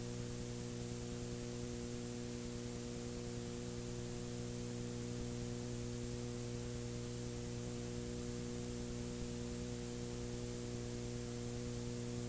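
Steady electrical mains hum with several evenly spaced overtones under a constant hiss, on an old recording's audio track, with no programme sound.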